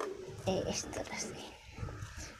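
Small hand rake scraping and loosening potting soil in a pot, in short scratchy strokes.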